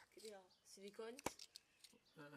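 Faint human speech in short fragments, with one sharp click about a second and a quarter in.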